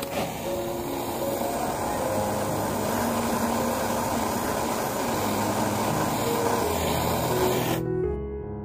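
Torch flame hissing steadily as it heats the joint of a copper ring for soldering, cutting off suddenly just before the end. Soft piano music plays underneath.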